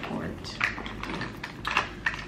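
A few light clicks and taps of small hard objects being handled, with a close pair of clicks near the end.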